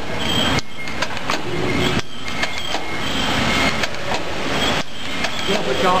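Automatic filter-paper tea bag packing machine running, a steady mechanical clatter with rapid repeated clicks as it forms, fills and seals sachets. Voices come in near the end.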